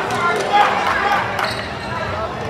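Basketball bouncing on a hardwood gym floor in play, several short sharp strikes, with voices over it.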